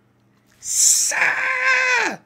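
A man imitating a body-snatcher's shriek: a sharp hiss about half a second in, then a high, held screech that drops in pitch as it ends.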